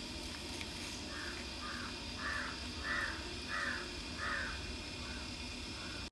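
A bird calling outdoors in a run of about eight short, evenly spaced calls, a little under two a second, starting about a second in.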